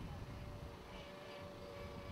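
Faint, low, uneven rumble of wind on the microphone, with a thin steady hum from a distant electric-powered model Ryan ST flying overhead, very quiet.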